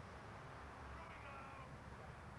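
Faint, distant voice calling out, over a low steady hum from the recording.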